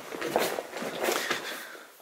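Footsteps on loose rock rubble: an irregular run of scuffs and knocks that fades near the end.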